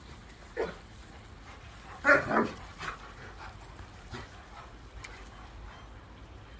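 A dog at play gives a short bark that falls in pitch, about half a second in, followed by a few smaller yips and whines.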